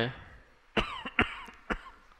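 A man coughing a few short times, starting about a second in, after a brief pause in a lecture.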